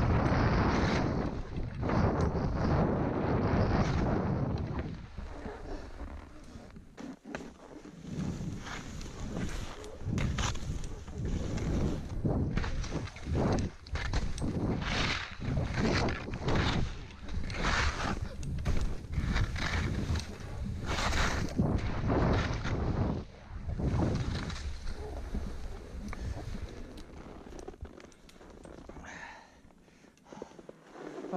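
Skis swishing through deep powder snow in a run of turns, one surge of snow noise about every second or so, heard over wind buffeting the microphone. The first few seconds are a steady rush of wind noise from straight-running speed before the turns begin.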